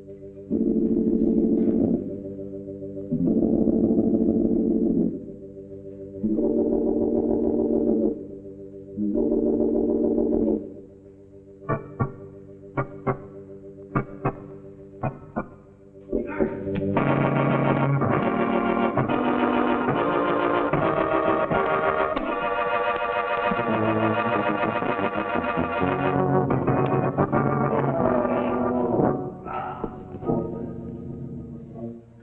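Suspense music on an organ: held chords swell in blocks of about two seconds with short gaps, then a run of short sharp stabs, then a fuller, continuous passage from about sixteen seconds in.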